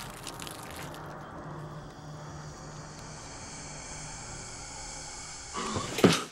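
Eerie horror-film ambience: a steady hissing drone over a faint, pulsing low hum. A sudden louder sound breaks in near the end.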